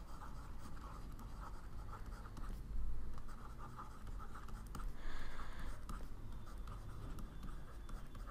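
Pen strokes of handwriting, a stylus scratching in short, uneven strokes, a little louder about three and five seconds in, over a steady low hum.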